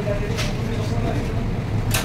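Steady low machine hum, with a brief hiss about half a second in.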